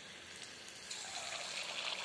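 Hot oil in a wok sizzling softly with fine crackles around a small piece of cabbage Manchurian dough frying in it, the oil hot enough for deep-frying. The sizzle grows a little louder about a second in.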